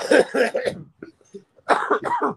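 A man coughing in two bouts: one right at the start and another near the end, into his cupped hands.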